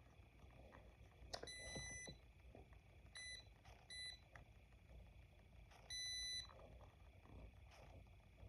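Faint electronic beeps from a Torras Coolify 3 neck cooler as its power button is pressed and held to switch from fan mode to heating mode. There are four high-pitched beeps, about a second and a half, three, four and six seconds in; the first and last are held about half a second and the middle two are short.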